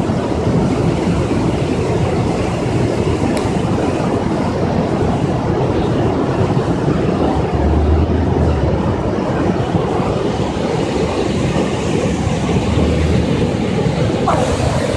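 Loud, steady rush of a fast torrent of muddy floodwater, deepest in the low range, swelling lower and louder about eight seconds in and again near the end.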